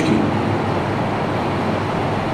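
Steady, even background noise with no distinct events: the constant rush of the hall's ambience picked up through the microphone while the voice pauses.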